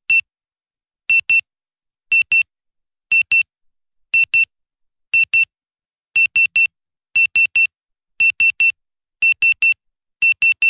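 Electronic countdown beeps from the SailRacer.net sailing app, counting down the last seconds to the race start. There is one short high beep each second: single at first, in pairs from about a second in, and in threes from about six seconds in.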